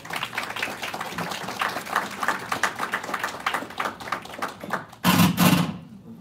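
An audience applauding, many hands clapping close together, with a short, loud thump near the end as the clapping fades.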